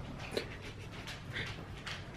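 A household pet's short breathy sounds close by, repeating about twice a second.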